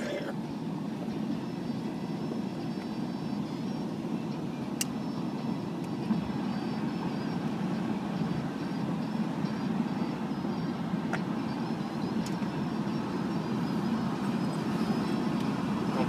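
Steady road and engine noise of a moving car heard from inside the cabin, with a few faint clicks.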